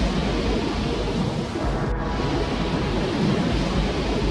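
Low, steady rumble of an erupting volcano, with a brief break about two seconds in.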